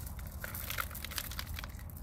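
Expanded clay pebbles clicking and rattling against each other and the plastic pot as they are dropped and pressed in by hand: an irregular run of small clicks.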